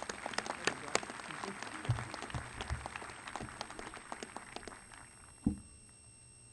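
Outdoor audience applauding, a dense patter of claps that thins out and fades over the last second or so. Near the end comes a single low thump at the podium microphone.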